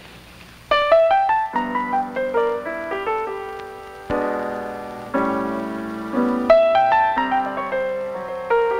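Jazz grand piano beginning a slow blues with subtly altered chords, entering about a second in after a brief hush: runs of single notes stepping down, then full chords struck and left to ring and fade.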